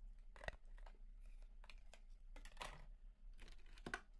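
Near silence with faint handling noises: a small click about half a second in, a soft rustle midway, and a few light clicks near the end, as small plastic lip balm tubes are picked up and handled.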